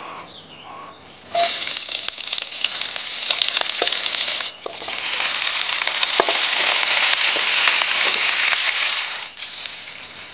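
Chunks of beef rib sizzling and crackling as they fry in a hot wok. The sizzle starts suddenly about a second in, dips briefly about halfway through, then carries on and dies down near the end.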